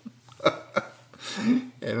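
Short bursts of laughter: a sharp chuckle about half a second in, then a brief hummed laugh near the end.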